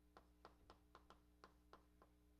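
Faint, irregular ticks of chalk tapping on a blackboard as writing goes on, about seven in two seconds, over a low steady room hum.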